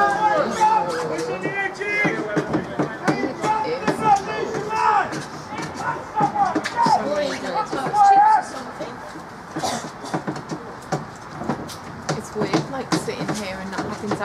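Indistinct talk from people near the microphone through the first eight seconds or so, then a quieter stretch of short sharp clicks and knocks.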